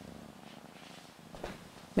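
A domestic cat purring faintly and steadily while being handled.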